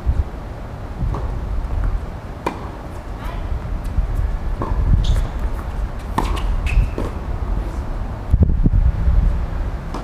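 Tennis rally on a hard court: a series of sharp knocks from rackets striking the ball and the ball bouncing, spaced irregularly about a second apart, over a steady low rumble.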